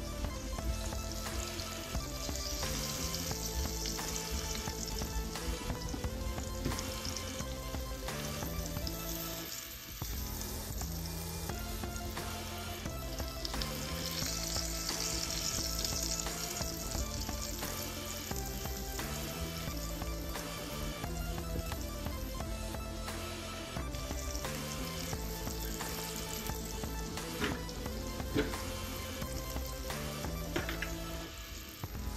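Breaded sheepshead fillets frying in olive oil in a skillet, a steady sizzle. Background music with a stepping bass line plays throughout.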